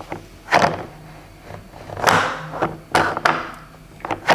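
Hungry Hungry Hippos plastic hippo being worked by its lever: a series of sharp plastic clacks as the neck shoots out and snaps back, the loudest about half a second and two seconds in.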